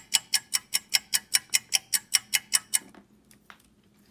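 Clock-like ticking, fast and even at about five to six ticks a second, dying away about three seconds in.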